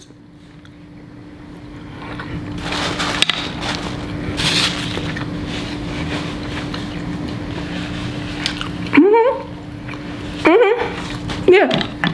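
Close-up chewing of a mouthful of rice, soft wet mouth sounds over a steady low hum. A short hummed "mm" comes about nine seconds in, and a brief vocal sound near the end.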